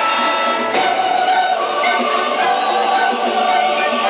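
A large mixed choir singing sustained chords together with a symphony orchestra, violins among it, with a change of chord a little under a second in.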